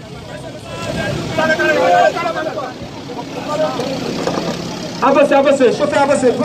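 Street crowd voices over the steady running of a vehicle engine, with a man's voice coming in loudly about five seconds in.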